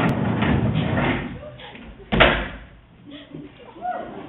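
Skateboard wheels rolling on a wooden stage floor and dying away, then one sharp, loud clack about two seconds in as the board's tail strikes the floor and the board is kicked up.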